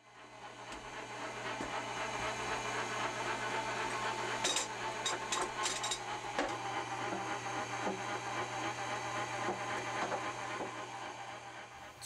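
Electric meat grinder running: a steady motor hum and whir that fades in over the first couple of seconds, with a few sharp clicks a little before halfway through.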